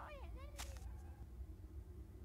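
A short, wordless cartoon vocalization with swooping pitch and a sharp snap, over within the first second, followed by a faint low hum.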